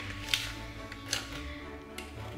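A spoon scraping wet cookie dough out of a plastic mixing bowl: a few short scrapes, the first the loudest, over quiet background music.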